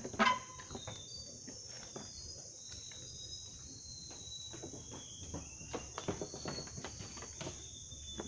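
Steady high-pitched buzzing of insects, with short high chirps scattered through it. Irregular knocks of footsteps on wooden boardwalk planks run alongside, the loudest just after the start.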